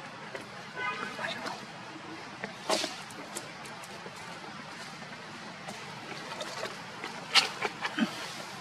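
Steady outdoor background hiss with a short, high-pitched squeak about a second in. A few sharp crackles follow, around three seconds in and near the end, like a plastic wrapper being handled by long-tailed macaques.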